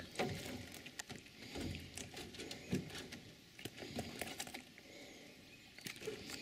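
Irregular light tapping and knocking, with scattered sharp clicks, quieter for a stretch near the end.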